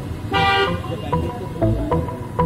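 A short car horn toot, followed by electronic background music with a steady beat.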